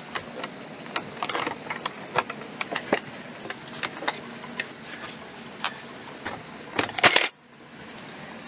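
A cordless nailer fires into the wooden frame joint, followed by a series of sharp clicks and light wooden knocks as the timber pieces are handled, with a louder knock near the end.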